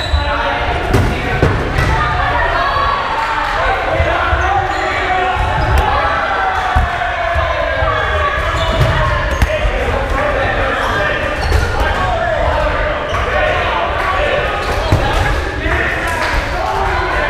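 Rubber dodgeballs bouncing and smacking on a wooden gym floor, with players' voices calling out throughout, echoing in a large hall.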